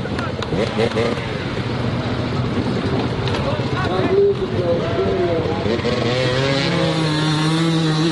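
Dirt bike engines revving, their pitch rising and falling, with spectators' voices mixed in. About six and a half seconds in, an engine settles into a steadier, wavering note.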